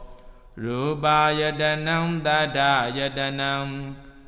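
A Buddhist monk chanting Pali scripture in a steady, even-pitched recitation tone, resuming about half a second in after a short breath pause.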